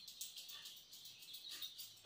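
Near silence: faint room tone with faint, high, repeated chirping in the background.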